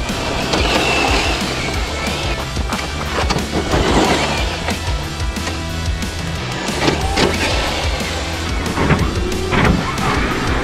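Background music with a stepping bass line, over which a brushless 1/10 RC drag truck runs on loose dirt, its motor and spinning tyres swelling up several times as it passes and slides.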